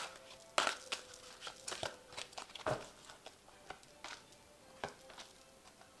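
Tarot cards being drawn from a deck and laid down on a cloth-covered table: scattered soft clicks and rustles of card stock, the loudest about half a second in and near the three-second mark.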